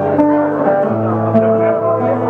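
Acoustic guitar playing held chords, with the bass note and chord changing a little under a second in.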